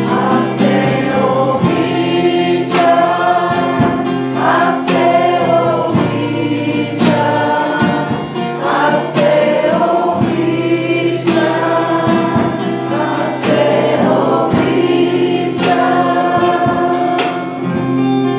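A live worship song: a woman leads the singing at a microphone, joined by the congregation's voices, over acoustic guitar strumming and drums. The beat and sustained chords hold steady throughout.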